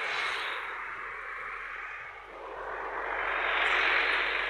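Road traffic passing close by: one car's engine and tyre noise fades away, then another vehicle approaches and is loudest near the end.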